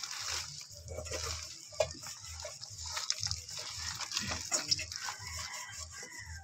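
Wet tearing and squelching as hands pull the tough skin and flesh apart on a raw blue marlin head, with irregular crackles from the plastic sheet beneath, over a low rumble that pulses about twice a second.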